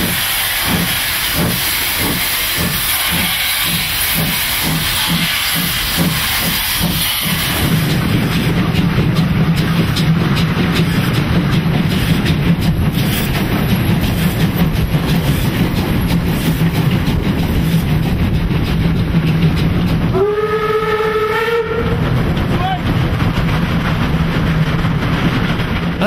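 Steam locomotive under way: hissing steam over a rhythmic beat about twice a second, which gives way after about seven seconds to a steady running rumble with a low hum. About twenty seconds in, the steam whistle gives one blast lasting about a second and a half.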